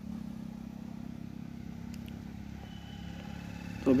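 A steady low engine hum, with a voice starting right at the end.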